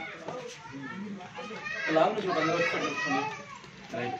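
Several people talking at once, indistinct overlapping chatter with some higher voices, loudest around the middle.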